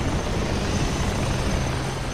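Steady low, engine-like rumble with a hiss over it, from a war-zone sound-effects track.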